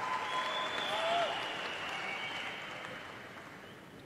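Audience applause, swelling in the first second or so and then fading away by the end.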